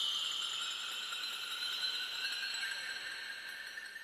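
A steady hiss carrying two faint whistling tones, the upper one slowly falling in pitch and the lower one slowly rising. It fades away near the end.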